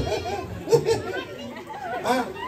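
Speech only: people talking, with overlapping chatter.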